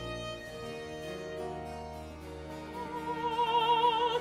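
Baroque opera orchestra playing, with harpsichord continuo and strings. About three seconds in, a high note held with a wide vibrato enters over the accompaniment.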